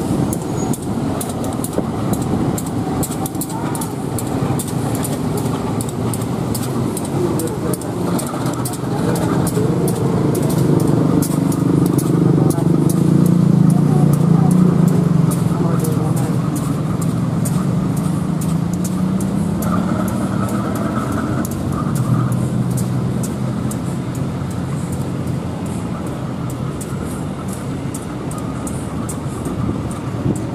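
KAI CC206 diesel-electric locomotive running light at low speed, its diesel engine humming; the engine note rises in pitch and loudness to a peak about halfway through, then settles back down.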